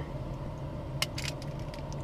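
Spring-loaded tube cutter being fitted onto the flared end of a copper pipe: one sharp metallic click about a second in, followed by a few lighter clicks, over a steady low hum.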